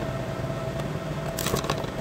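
A short cluster of small sharp clicks about a second and a half in, from a screwdriver and the metal case of a Lenovo ThinkCentre M93p Tiny being handled as its single rear case screw is undone, over a steady low room hum.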